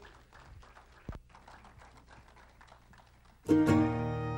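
Mostly quiet, with one short low thump about a second in; about three and a half seconds in, the instrumental intro to the gospel quartet's song starts suddenly and loudly.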